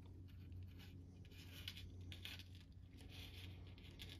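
Near silence: faint clicks and rustles of fingers working the small plastic parts of a transforming toy figure, over a steady low hum.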